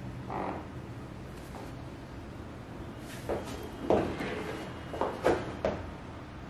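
A few short creaks and rustles from bodies shifting on a padded exercise mat under a hands-on back massage, the strongest in the second half, over a low steady hum.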